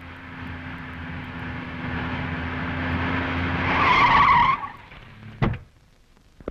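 A small hatchback car drives up, its engine growing steadily louder. Its tyres squeal briefly as it brakes hard to a stop, and the squeal cuts off suddenly. A short thump follows about a second later.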